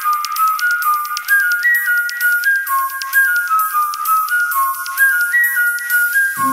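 Background music: a high, whistle-like melody that slides from note to note over a steady ticking beat.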